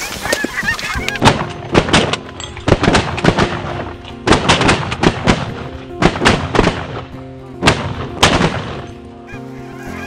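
A rapid volley of shotgun blasts from several hunters firing together, some fifteen or more shots over about seven seconds, amid the honking of Canada geese flaring over the decoys.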